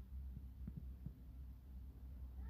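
Faint, steady low hum with a few faint, light taps about half a second to a second in.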